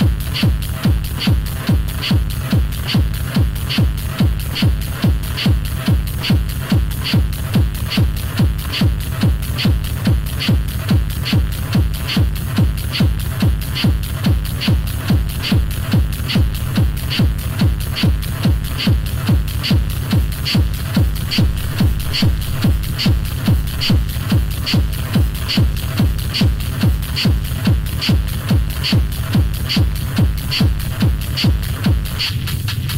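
Hard Chicago-style techno from a continuous DJ mix: a fast, steady kick drum a little over two beats a second, with a bright hi-hat repeating in step with it.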